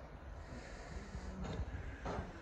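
Quiet background: a low, steady rumble with a few soft knocks about one and a half seconds in.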